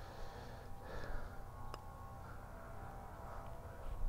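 Quiet outdoor background with a single faint tick a little under two seconds in: a putter striking a golf ball. A faint steady hum sits underneath.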